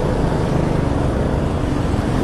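Motor scooter engine running steadily at low speed, mixed with wind noise on the microphone and passing road traffic.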